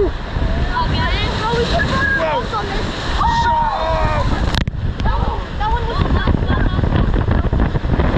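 Water rushing and splashing under a raft tube as it slides round a water-slide bowl and down the chute, with wind buffeting the microphone. Riders' voices call out over it, and there is one sharp knock a little past halfway.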